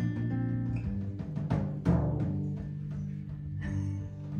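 Live acoustic band playing a song's instrumental opening: acoustic guitar and upright double bass over a drum kit, with a couple of sharp drum strikes just under two seconds in.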